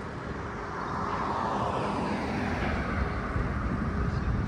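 Traffic noise from a vehicle passing on the street, swelling over a couple of seconds and then easing off.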